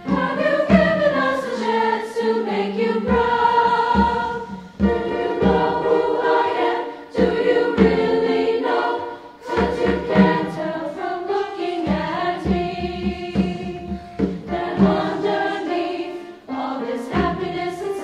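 Women's choir singing in harmony with piano accompaniment, in phrases separated by brief breaks.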